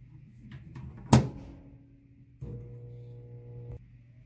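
Microwave oven door shut with one sharp clunk about a second in, after a few faint clicks. About two and a half seconds in the oven starts with a steady electrical hum, which cuts off suddenly near the end.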